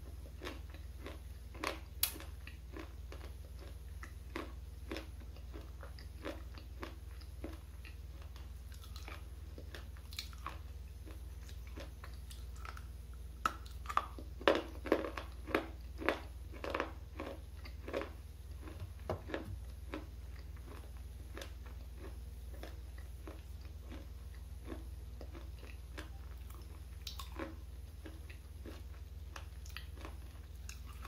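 Close-miked biting and crunching of a hard, dry red-and-black bar, with chewing. Crisp crunches are scattered throughout. They bunch into a run of louder crunches about halfway through, then thin out to quieter chewing.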